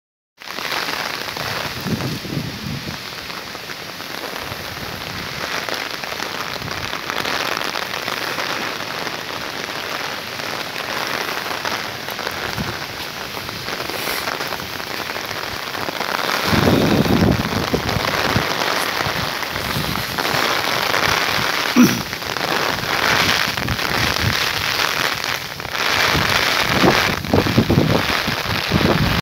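Heavy rain pouring steadily, a continuous hiss of drops on foliage and ground, swelling louder in surges from a little past the middle.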